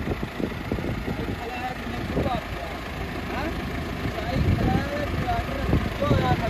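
Massey Ferguson 385 tractor's diesel engine idling steadily, with faint voices of people standing around it.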